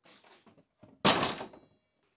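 A thunk against a closed plastic shed door, about a second in, as it is worked from outside, with a brief ring after it and faint rattling before.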